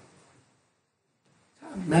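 A man's lecturing voice trails off, then about a second of near silence, then his speech starts again near the end.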